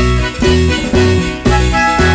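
Marimba music: a melody of many pitched notes over a strong bass note that repeats about twice a second.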